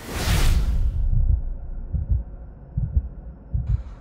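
Shendrones Thicc V2 cinelifter drone spooling up for liftoff. A rush of noise fills the first second, then prop wash buffets the microphone in low, irregular thumps.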